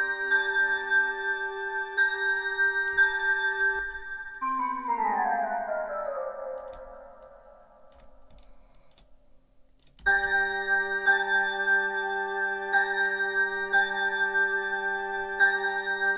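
Synth keyboard chords from a software synthesizer preset played back as a looping melody, with sustained tones. About four seconds in, a downward-gliding sweep of notes takes over and fades almost to silence, and the chords come back suddenly about ten seconds in.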